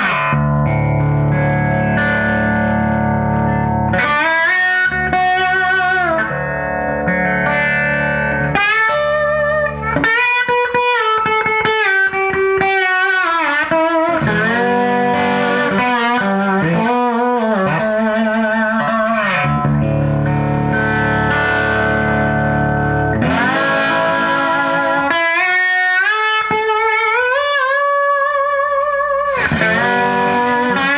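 1950s Gibson Les Paul Junior electric guitar played with a slide through an amplifier: gliding, wavering notes and runs, with a couple of brief pauses. The guitar is badly out of tune and its action is very high, about half an inch at the 12th fret.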